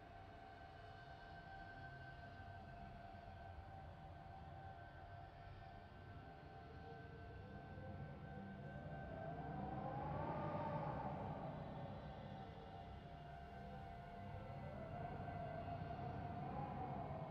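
Eerie ambient soundscape: a low rumbling drone with a few steady high tones, joined about six seconds in by a slow wail that rises and falls like a distant siren, with a second wail rising near the end.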